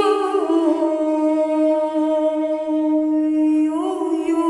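A woman's voice singing an Armenian folk song in long held notes, dropping a step shortly after the start and rising again near the end.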